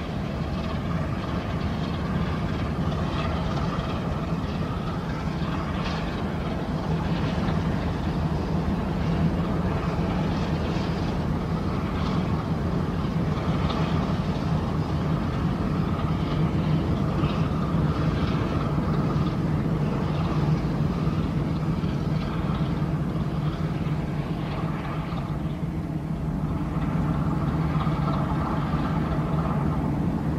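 Inland motor cargo barge's diesel engine running steadily as it passes, a continuous low drone with a fainter higher hum above it.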